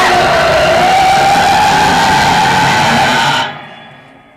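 A loud, harsh din with one long wavering shriek running through it, cutting off suddenly about three and a half seconds in and dropping away toward quiet.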